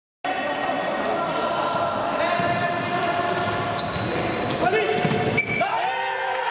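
Futsal play on a wooden indoor court: the ball being kicked and bouncing, shoes squeaking and players calling out, echoing in a large hall.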